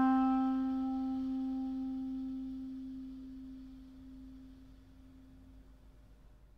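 Solo clarinet holding a single low note that dies away slowly to almost nothing over about six seconds.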